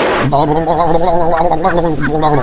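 A short rush of noise, then a man's voice holding one long, wavering, gargled-sounding cry for nearly two seconds, as if sliding helplessly.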